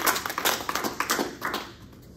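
A small audience applauding, with separate hand claps audible. The applause thins out and dies away about a second and a half in.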